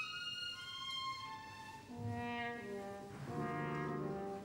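Orchestral ballet music: a high melody steps downward, then brass chords come in about halfway through, and a second, louder chord follows near the end.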